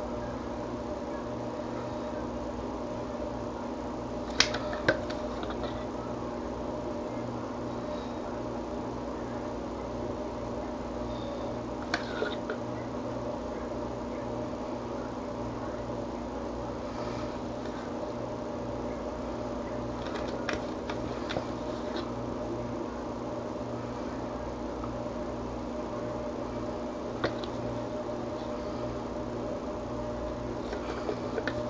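A steady low hum throughout, with a few scattered light clicks and taps from a spatula working soft soap batter in a loaf mold.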